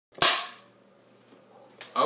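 A Neewer film clapperboard's clapstick snapped shut once: a single sharp crack that rings off briefly. A fainter click follows near the end.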